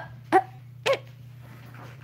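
A child's voice giving three short, sharp "uh" sounds in quick succession, the last a little under a second in, over a steady low hum.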